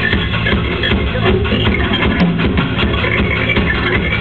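A rock band playing live: electric guitar over drums, with a steady beat.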